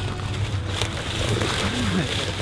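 A hooked bluegill splashing and thrashing at the water's surface as it is reeled in toward the bank, in a burst that starts a little under a second in and lasts about a second.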